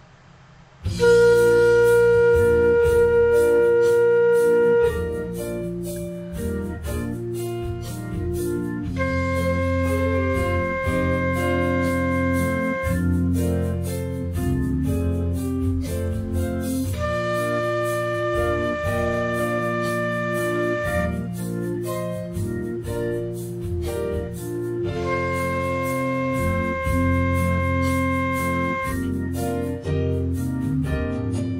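Concert flute playing a beginner exercise of long held notes, B flat, C, D, then C, each held about four seconds with a rest between, over a backing track of drums, bass and organ-like keyboard chords. The first note is the loudest.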